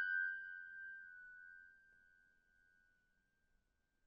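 A single high, bell-like ringing note, struck just before and fading away over about a second and a half.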